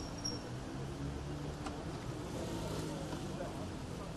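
Low-speed street traffic: a motor scooter and a car driving slowly past, with a steady low engine hum and one light click about one and a half seconds in.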